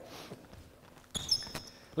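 A basketball bouncing on an indoor court floor a few times, starting about a second in, with high, short squeaks of sneakers on the floor as players move.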